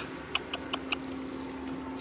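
Hands digging into a hole in dry, cracked mud, making a scatter of short, sharp crackles and scrapes from soil and grass stems. A steady low hum runs underneath.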